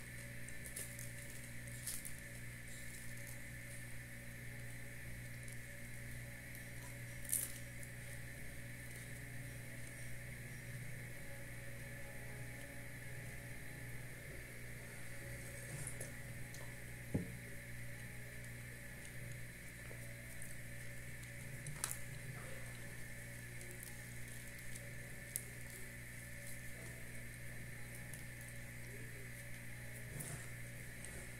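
Soft eating sounds of a person chewing bread and sipping coffee from a small cup, over a steady low hum and a higher steady whine, with a few light clicks and knocks scattered through.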